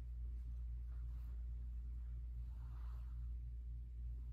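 Quiet room tone with a steady low hum, and a faint soft rustle about three seconds in.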